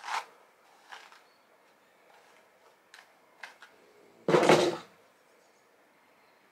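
A few soft, brief strokes of a plastic paddle hairbrush through slicked-back hair, then one much louder knock a little after four seconds in.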